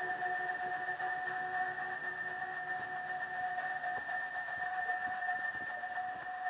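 A steady drone of held high tones that do not change, over a faint hiss.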